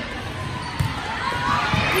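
Volleyball struck by hand twice during a rally, two sharp smacks about a second apart, over a background murmur of voices in the gym.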